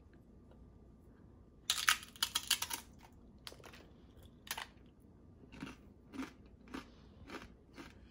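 A man biting into a crisp, spicy tortilla chip: a quick run of loud crunches a little under two seconds in, then slower, softer single crunches as he chews it.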